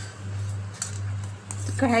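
Low steady electrical hum with a slight pulsing, from an induction cooktop heating an empty steel kadhai. A woman's voice begins near the end.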